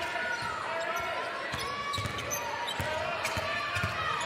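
A basketball dribbled on a hardwood arena court: a series of short thumps at an irregular pace, over the murmur of the arena.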